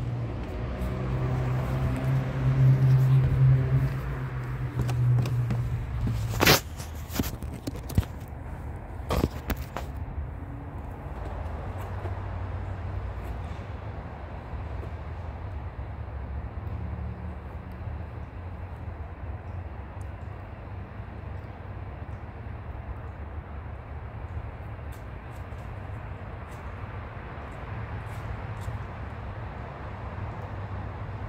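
Low outdoor rumble of wind on the phone's microphone, with a louder low hum for the first six seconds or so. A run of knocks and clicks follows as the phone is handled and set down, then the steady rumble carries on.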